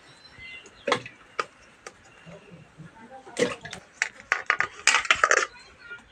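Raw whole potatoes dropped by hand into a pressure cooker, a series of knocks: a few single ones, then quicker clusters from about three seconds in.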